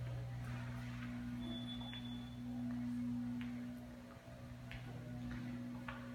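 A steady low hum with a few faint taps, and a brief faint high tone about a second and a half in.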